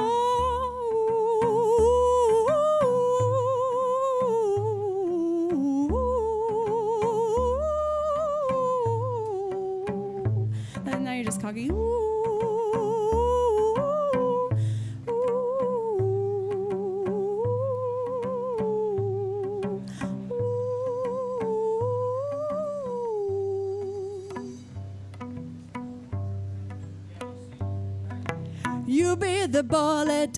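A woman humming a wordless melody with a wide vibrato, carrying the accordion solo part, over low cello notes.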